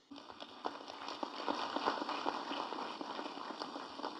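Applause: many hands clapping, starting suddenly and building over the first second or two.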